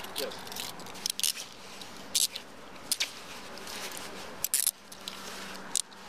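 Handcuffs being put on a man's wrists behind his back: short bursts of metallic ratcheting clicks, about six in all, the loudest about two seconds and four and a half seconds in.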